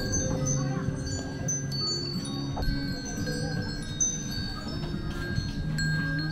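A hanging tubular wind chime ringing, its tubes struck at irregular moments so that several clear, lingering tones overlap.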